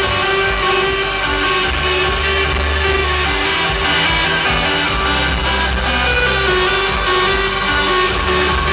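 Loud hardstyle electronic dance music played over a club sound system and recorded from within the crowd, with long held bass notes under steady synth lines.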